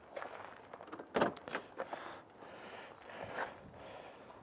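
Faint footsteps on gravel and a car door being opened, with two sharp clicks a little over a second in.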